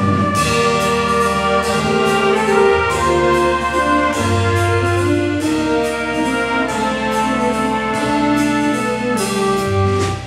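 Small jazz big band playing: saxophones, trumpets and trombones holding and moving between chords over a drum kit keeping a steady beat.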